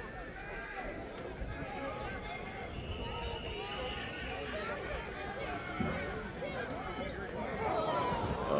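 Several people talking indistinctly in the background, their voices overlapping into faint chatter.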